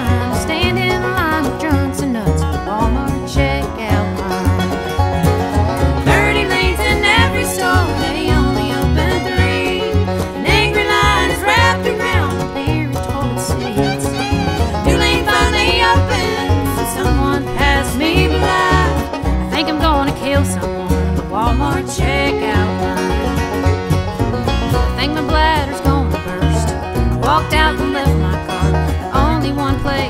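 Instrumental break in a bluegrass song: a string band playing fast picked notes over a steady bass beat, with no singing.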